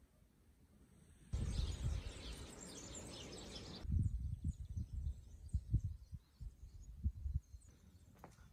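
Outdoor ambience: small birds chirping over an even rushing noise, then wind buffeting the microphone in uneven low gusts, with faint birdsong behind it.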